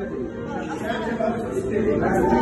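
Only speech: men's voices talking, with several people speaking.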